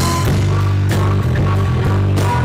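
Live blues-rock band playing an instrumental passage: electric bass and drum kit with cymbal hits under a lead instrument holding high notes.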